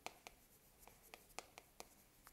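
Chalk writing on a chalkboard: a string of short, faint, irregular taps as the characters are written.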